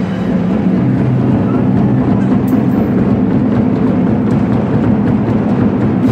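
Ensemble of large Chinese barrel drums struck in fast, dense rolls that blend into a continuous low rumble.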